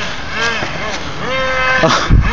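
Nitro RC car's small two-stroke glow engine revving in short throttle blips, its whine rising and falling, then held at a steady high pitch for about half a second near the end.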